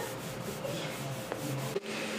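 Clothing fabric rustling and rubbing as two people hug, a soft continuous scratchy noise that breaks off shortly before the end.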